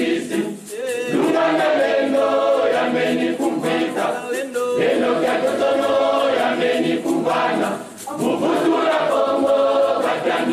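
Choir of voices singing a sacred song in Kikongo, the phrases broken by brief pauses about half a second in and again late on.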